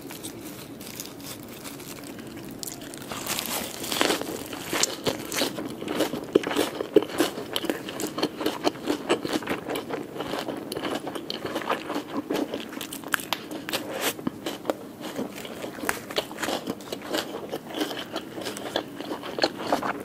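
Close-miked eating of a lettuce wrap filled with grilled tilapia: after a few quieter seconds, a crisp bite about four seconds in, then continuous crunching and chewing with many small irregular clicks.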